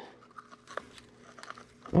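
Faint, scattered crackles and a few light clicks from hands handling and opening a fire-charred small box.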